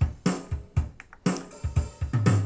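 The Yamaha CLP745 digital piano's built-in rhythm accompaniment playing a drum-kit beat through the piano's own speakers: a steady pattern of kick-drum thumps with snare and cymbal.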